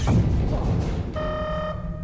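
Sci-fi energy-weapon blast sound effect: a falling zap that dies away into a rumble in the first second, as an enemy ship fires on the starship. About halfway in, the ship's alert tone sounds steadily for about half a second, a repeating battle-stations alarm, over a low steady rumble.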